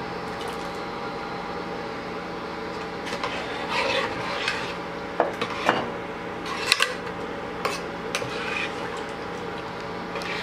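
Metal ladle stirring a watery rice mixture in a pressure cooker. A few clicks and knocks of the ladle against the pot come in the middle stretch, over a steady hum.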